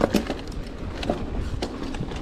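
Mountain bike rolling fast down a dirt trail: low tyre rumble with irregular rattling clicks and knocks from the bike over the ground, the sharpest knock right at the start.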